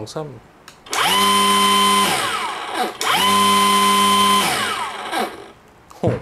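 A cordless brushless grass trimmer's motor and line head run free twice in short bursts. Each run spins up fast to a steady whine, holds about a second, then coasts down with a falling whine. The second run starts just as the first dies away and lasts a little longer.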